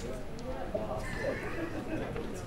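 Indistinct chatter of several people talking in a large room, with a brief high-pitched voice or call about a second in.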